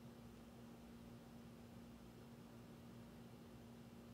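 Near silence: faint room tone with a steady low hum from a running air conditioner.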